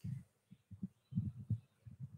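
Faint, irregular muffled low thumps, several short ones spread through the two seconds.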